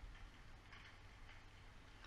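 Near silence: a faint steady hiss with a few faint ticks.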